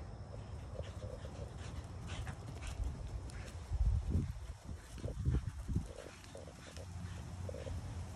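A greyhound running flat out across grass, with dull low thumps loudest about four and five seconds in, over a steady low rumble.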